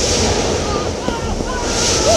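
Cartoon whirlwind sound effect: rushing wind that swells at the start and again near the end.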